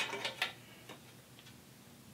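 A few light metallic clicks and taps as a steel PC-case drive cage is handled, bunched in the first second and a half, over faint room tone.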